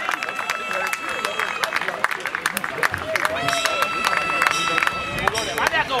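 Small crowd of spectators clapping and calling out in celebration of a goal, with scattered sharp claps throughout. Two long steady high tones sound over them, each lasting about a second and a half.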